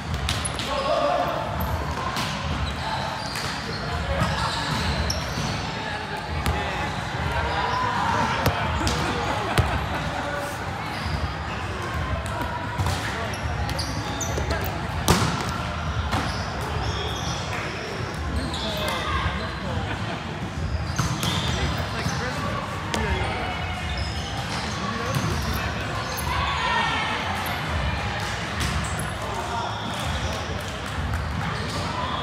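Indoor volleyball being played: sharp slaps of the ball being hit and thumping on the floor, several times, the loudest about halfway through, amid players' shouts and chatter echoing in a large gym.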